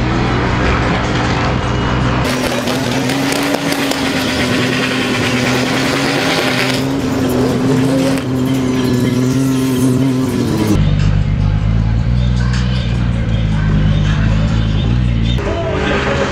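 A drift car's engine held at steady high revs, with loud road and tyre noise, from about two seconds in until about eleven seconds in. Background music with a steady beat plays before and after.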